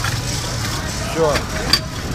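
A motor running with a steady low drone, with a sharp click near the end.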